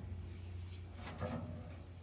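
Crickets chirring steadily in a high, even tone over a low hum, with a few faint soft knocks.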